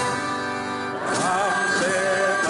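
Catalan folk group singing in the open air: a man's voice at a microphone and a chorus, accompanied by violin, accordion, flutes and a barrel drum. A steady instrumental chord is held for the first second, and the voices come back in about a second in.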